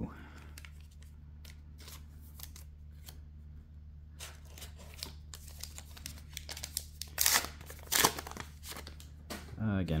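A foil booster-pack wrapper crinkling as it is handled and torn open, starting about halfway through, with two sharper rips near the end. A steady low hum runs underneath.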